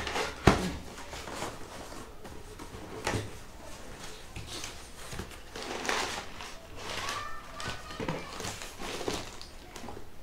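A cardboard box being opened by hand: flaps and paper packaging rustling and crinkling in short irregular bursts, with one sharp snap about half a second in, the loudest sound.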